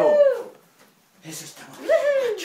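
A high howling call that rises and falls in pitch, heard twice: the first fades out about half a second in, and the second starts near the end.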